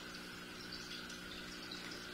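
Faint steady hum with a light hiss, and a few faint, scattered high chirps in the background.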